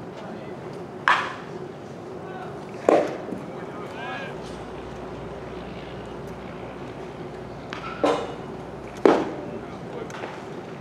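A baseball pitch smacking into the catcher's leather mitt with a sharp pop about nine seconds in, the loudest sound here. Three other short sharp knocks come earlier, over faint background voices and a steady hum.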